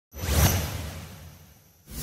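Cinematic whoosh sound effect with a deep low boom under a hissing swish, opening a percussion music track. It swells quickly and fades over about a second and a half. A second whoosh starts near the end.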